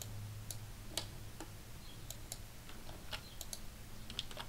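Faint, irregular clicks of a computer keyboard and mouse being worked, over a steady low hum.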